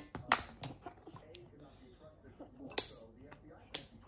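Plastic stacking-toy rings clacking against their post and each other as they are handled and pulled off: a few scattered sharp knocks, the loudest about three quarters of the way in.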